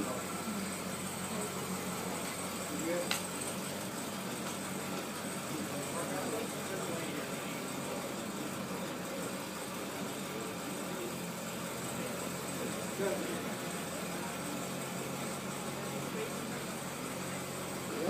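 Chevrolet Corvette ZR1's supercharged 6.2-litre V8 idling with a low, steady hum.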